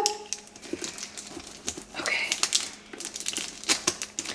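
Packaging crinkling and rustling, with scattered small clicks, as a boxed perfume is opened.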